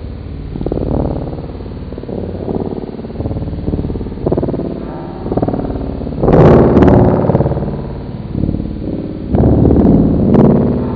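Loud, distorted electronic soundtrack that swells and ebbs, with two harsher, louder bursts about six and nine and a half seconds in.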